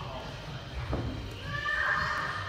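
Voices of children echoing in a large gym hall, with a sharp rising cry about a second in and a high-pitched drawn-out call or squeal near the end.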